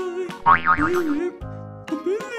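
Playful children's background music with a springy, wobbling cartoon boing sound effect about half a second in.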